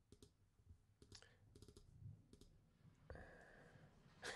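Near silence with faint scattered clicks of a computer keyboard and mouse being worked, in a few small clusters; a faint steady hiss comes in about three seconds in.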